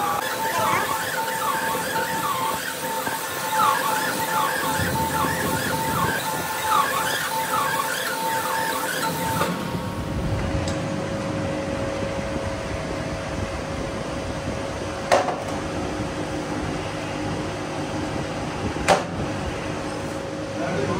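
Machinery running with a steady hum. For the first half, repeated short squealing sweeps ride over it. After a cut, a steadier low hum continues, with two sharp metallic knocks about four seconds apart near the end.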